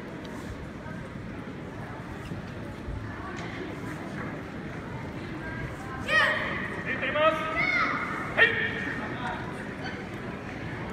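Hall crowd murmur, then from about six seconds in several loud, high-pitched shouts with falling pitch, a sharp one near the end: kiai from young karateka performing kata.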